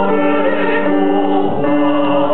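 A man and a woman singing a duet in harmony, holding long notes and moving to new ones about three-quarters of the way through, with piano accompaniment.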